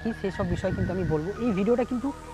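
A man speaking, over a thin steady high tone that drops to a lower pitch about halfway through.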